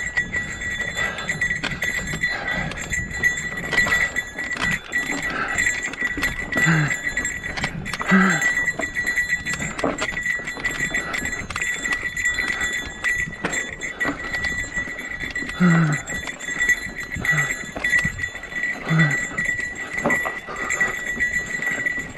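Mountain bike rattling and knocking over a rocky dirt trail, with the rider's short, low grunts of effort every few seconds, each falling in pitch.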